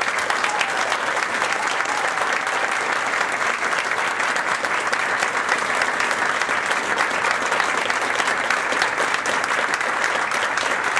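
Audience applauding at the end of a speech: dense, sustained clapping from many hands at an even level.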